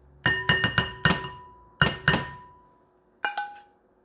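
A wooden spoon knocking against a stainless steel frying pan held over a glass bowl, tapping out the last of the cooked onions and spinach. The knocks are sharp and ring briefly: a quick run of them, two more about two seconds in, and a pair near the end.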